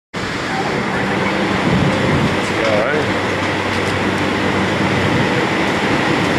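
Steady rushing wind noise on the microphone, with a low hum underneath and a faint voice briefly about three seconds in.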